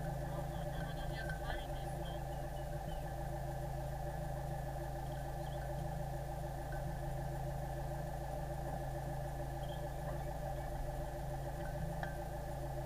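Sailboat's engine running at a steady idle: a low hum with a stack of steady tones that does not change in pitch or loudness.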